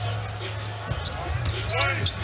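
Arena sound of a live NBA game: a steady crowd murmur with a basketball being dribbled on the hardwood court.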